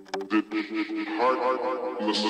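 Electronic dance track from a DJ mix: the pulsing synth pattern gives way to a processed vocal sample over held synth notes.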